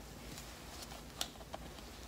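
Quiet room tone with a few faint, light clicks spread through it.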